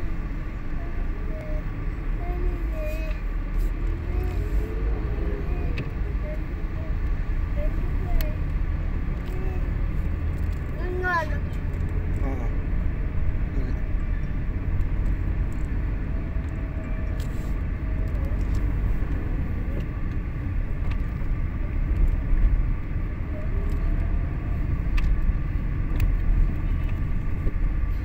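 Steady low rumble of a car's engine and tyres heard from inside the cabin as it drives, with faint voices talking underneath.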